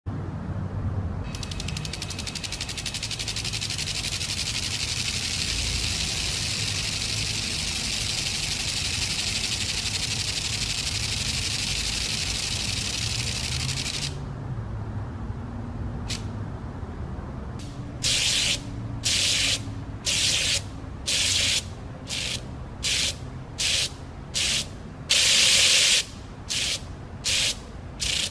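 Electromechanical flip-dot display running test patterns, its small magnetic discs flipping between black and yellow. For the first half the flipping makes a dense, continuous clicking rattle as text scrolls across; after a lull it comes in short rattling bursts about three quarters of a second apart, with one longer burst near the end, as rows of dots flip together.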